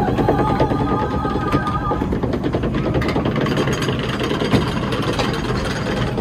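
Log flume ride machinery clattering in a fast, steady rhythm under the boat, typical of the chain lift hauling a log uphill. A couple of held tones from the ride's show soundtrack sound over it for the first two seconds.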